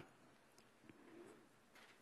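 Near silence: room tone, with a faint brief sound about a second in.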